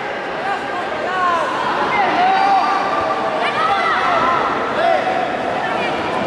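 Spectators shouting and calling out over one another in many short yells, above a steady hubbub of crowd voices.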